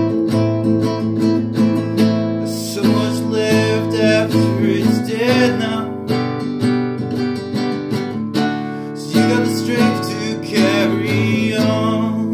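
Acoustic guitar strumming chords as the accompaniment of a song.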